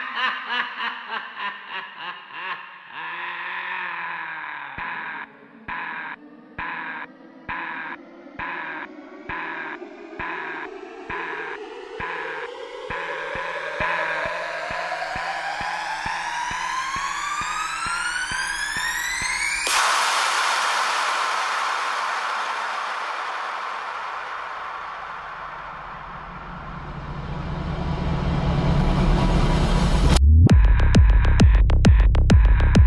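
Breakdown in a psytrance DJ mix with the kick drum dropped out: chopped synth chords pulse evenly while a synth tone rises steadily in pitch for about fifteen seconds. It ends in a sudden wash of noise that fades, and the bass swells back in near the end, building toward the drop.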